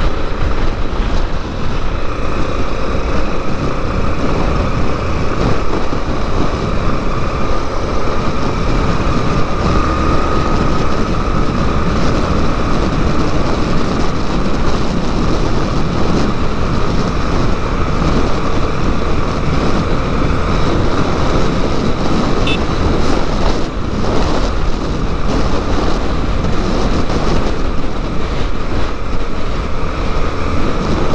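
Yamaha Lander 250 single-cylinder four-stroke engine running steadily while riding in traffic, heard from a helmet-mounted camera with heavy wind and road noise over it.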